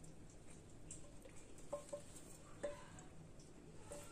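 Near silence: faint room tone with a few light ticks.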